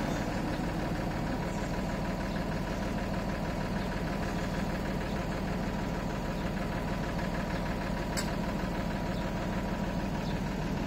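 Crane truck's diesel engine idling steadily, keeping the truck-mounted loader crane powered, with a faint click about eight seconds in.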